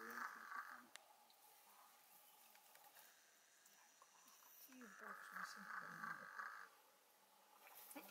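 Near silence with two faint buzzing sounds, each about two seconds long: one at the start and one about five seconds in. Faint low voices can be heard around the second one.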